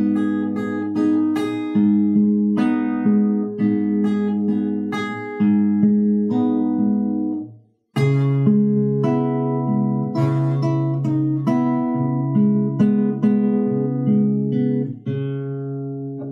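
Acoustic guitar fingerpicked: bass notes under repeated higher notes of a chord pattern played in fifth position with a partial barre. The playing stops briefly about halfway through and then resumes.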